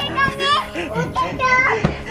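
Young children's high voices chattering and calling over background music.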